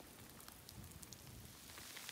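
Light rain falling, very faint, with scattered drops ticking.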